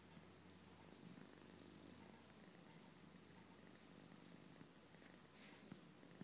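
Domestic cat purring faintly and steadily while it is massaged by hand.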